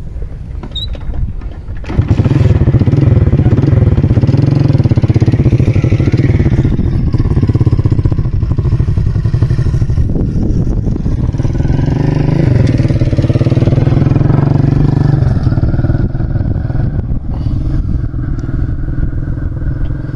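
Small petrol engine of a backpack power sprayer running, jumping much louder about two seconds in and then running hard with a wavering pitch.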